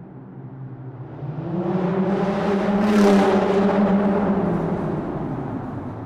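A car engine running with a steady hum, swelling to its loudest about three seconds in and then fading away.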